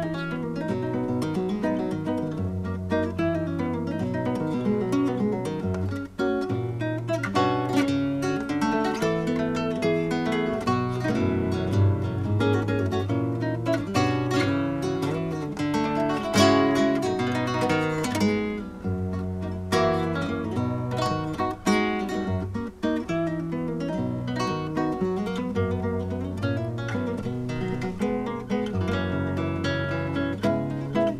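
Solo flamenco guitar playing guajiras, unaccompanied. Plucked melodic runs mix with frequent sharp strummed chords.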